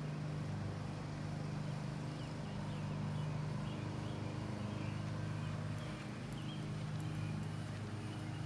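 A steady low mechanical hum with no change in level, with a few faint, short high chirps over it.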